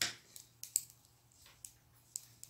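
Metal knitting needles clicking lightly against each other as stitches are worked, five or so sharp ticks at uneven intervals, after a brief rustle at the very start.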